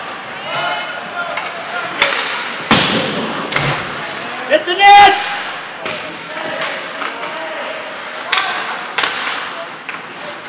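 Ice hockey play: a run of sharp knocks and bangs against the rink boards and glass, with stick clacks, over the scrape of skates. The loudest bang comes about halfway through. Short shouts from the players are mixed in.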